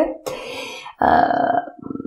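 A woman's breathy, rasping laugh: a soft exhale, then a loud throaty burst about a second in, trailing off in a few short pulses.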